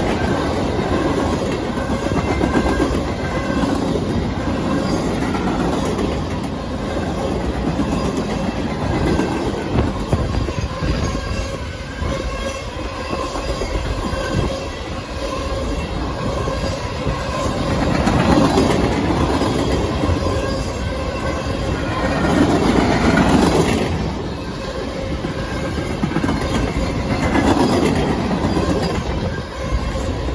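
Freight train cars rolling past close by: a steady rumble of steel wheels on rail with clattering over the joints. The noise swells louder several times in the second half as the cars go by.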